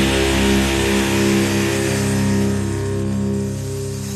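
Closing chord of a rock song on electric guitar, held and ringing out, slowly fading as the song ends.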